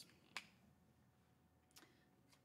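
Near silence: room tone, broken by one sharp short click about a third of a second in and a fainter click near the end.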